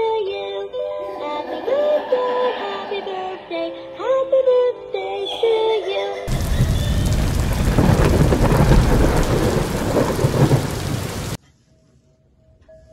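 A singing birthday teddy bear toy's high, synthetic-sounding voice sings a tune. About six seconds in, a loud rushing, rumbling noise like a thunderstorm with rain takes over, then cuts off suddenly shortly before the end.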